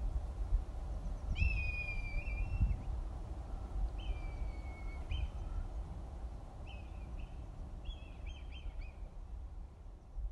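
Birds calling over a low steady rumble: two long, level calls in the first half, then several short calls near the end.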